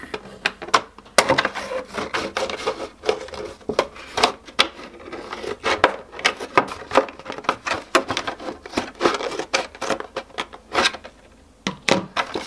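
Scissors cutting through a plastic milk bottle: a long run of sharp snips, a few each second, that stop about a second before the end.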